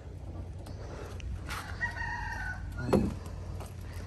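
A rooster crowing once, one long drawn-out call beginning about one and a half seconds in, followed by a single short knock.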